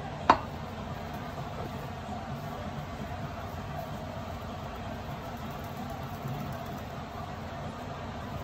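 A single sharp knock shortly after the start, followed by a steady low background hum.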